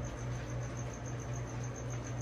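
Steady low hum of room equipment, with a faint high-pitched pulsing about five times a second.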